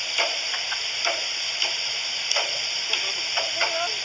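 Steady hiss of background noise, with a few faint, brief voice fragments and small clicks scattered through it.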